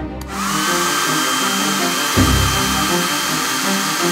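Handheld hair dryer switched on just after the start: its motor whine rises quickly and then holds steady under a loud, even rush of air as it blows out a long beard.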